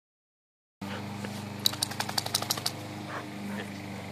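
A steady low hum begins just under a second in and carries on. Between about a second and a half and nearly three seconds in, a quick run of about ten sharp clicks rides over it.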